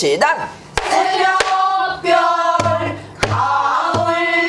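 A woman singing a pansori danga in traditional Korean vocal style, holding long, wavering notes. A few sharp strokes on a buk barrel drum keep the rhythm.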